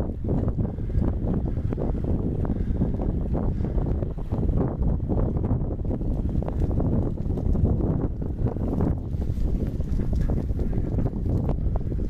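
Wind buffeting the microphone of a camera riding on a moving bicycle: a steady low rumble with rapid, gusty flutter.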